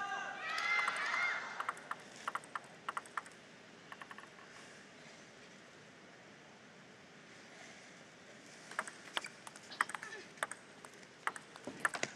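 Table tennis ball clicking: a few sharp clicks about two seconds in, then a serve and a fast rally of ball strikes on the table and rackets in the last three seconds.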